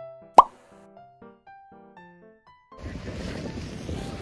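An added editing sound effect: a loud, sharp pop with a quick upward sweep, then a short tune of separate pitched notes lasting about two seconds. Near the end this gives way to outdoor noise with wind rumbling on the microphone.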